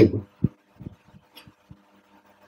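A man's voice trails off at the end of a word, then a pause broken by a few soft, low thumps, the first and loudest about half a second in.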